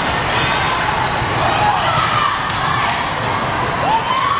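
Steady echoing din of a busy indoor volleyball hall: many voices blended together, with volleyballs smacking on hands and the hardwood floor, including two sharp knocks about two and a half and three seconds in.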